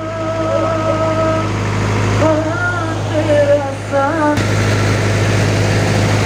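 Music with a sung melody, long held notes and then bending phrases, over a steady low hum from a diesel generator set running. About four seconds in the melody stops and a steady hiss takes over while the hum carries on.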